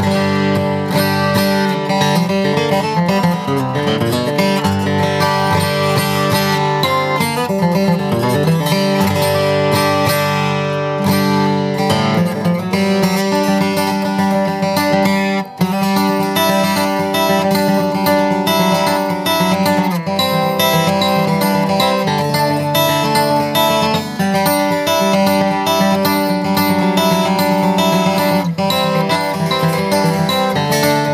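Atkin D37 dreadnought acoustic steel-string guitar being played, strummed and picked chords ringing out continuously, with a momentary break about halfway through.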